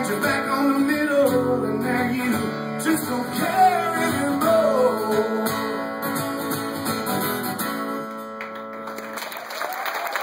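A solo acoustic guitar is strummed through a song's closing bars, with a wordless sung line over it, then rings out and fades. Near the end the audience begins to applaud and cheer.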